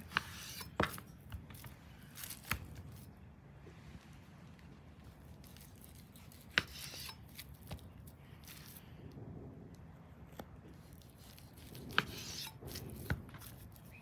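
Chef's knife slicing through raw beef tenderloin on a wooden cutting board, cutting it into filet mignon steaks: quiet cutting and handling sounds, with a few sharp taps of the knife and meat on the board.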